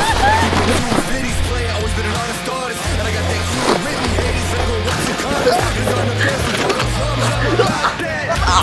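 Background music with a heavy bass line of held notes, over the scraping hiss of plastic sleds sliding fast on packed snow.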